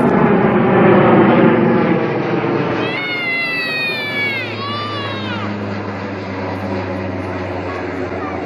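Jet airliner climbing out overhead after takeoff, its engines loud about a second in and slowly fading as it moves away. Around three to five seconds in, a high falling cry sounds twice over the engine noise.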